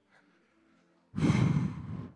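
A heavy sigh or breath out, blown close into a handheld microphone. It starts about a second in and lasts about a second.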